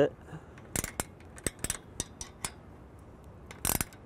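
A 10 mm ratcheting wrench clicking in short, irregular runs as it gently snugs the elevation lock bolt on a steel antenna mount, with a louder quick run of clicks near the end.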